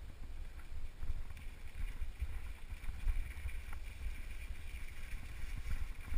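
Mountain bike rolling down a rocky dirt trail, its tyres and frame rattling over gravel with a few small knocks, under a steady low wind rumble on the camera's microphone.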